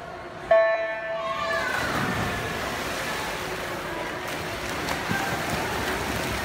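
Race start of a freestyle swim event: an electronic starting signal sounds one pitched tone for about a second. Then comes steady splashing of swimmers in the water and spectators shouting and cheering in an echoing pool hall.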